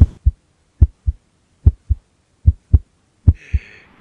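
Heartbeat sound effect: five double thumps, lub-dub, a little under a second apart, with a faint hiss near the end.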